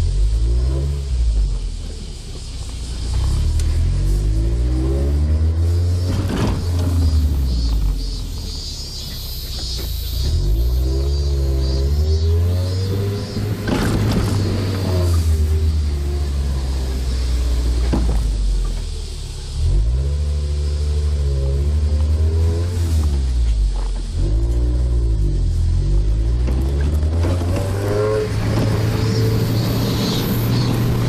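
Mazda NB Roadster's four-cylinder engine heard from the open cockpit, its revs climbing and dropping back several times as it is driven through the gears, over road and wind noise.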